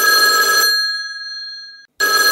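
Telephone ringing: one ring fades out over the second half, and after a brief gap the next ring starts at the very end.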